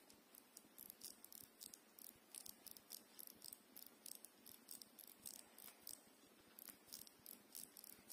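Crown of a vintage Waltham mechanical wristwatch being turned by hand, giving a faint, irregular run of small clicks several times a second.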